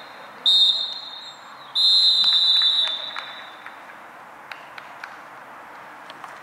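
Referee's pea whistle blown twice, a short trilling blast and then a longer one of about a second. Together with a blast just before, this makes the three-blast pattern that signals full time.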